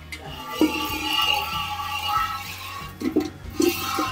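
Background music with steady held tones, over the hiss of milk squirting by hand from a cow's teats into a steel bucket.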